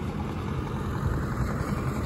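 Minibus engine running as it drives along the road toward the microphone, a steady low rumble.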